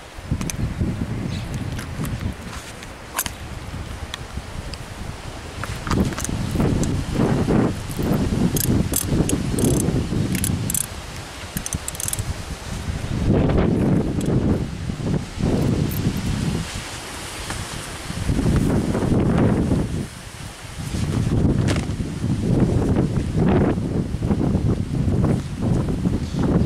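Gusts of wind rumbling on the microphone, with light metallic clinks of a horse's curb bit, its rings and chain jingling as it is fitted into the mouth.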